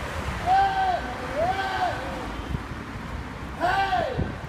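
A man yelling three long, wordless shouts, each arching up and then down in pitch, the last one near the end.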